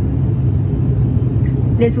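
Steady low drone of an ATR 72-600 turboprop's engines heard inside the passenger cabin while the aircraft is on the ground.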